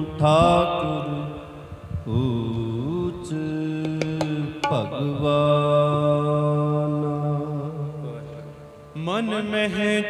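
Sikh kirtan: men singing a Gurbani shabad in long held notes with gliding ornaments, over the steady tones of harmoniums.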